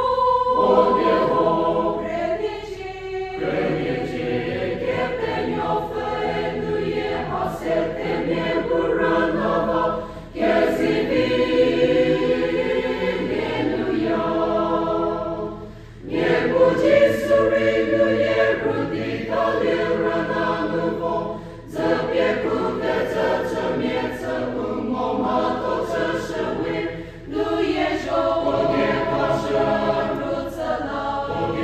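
A mixed choir of men's and women's voices singing a hymn in sustained phrases, with a brief pause for breath about every five to six seconds.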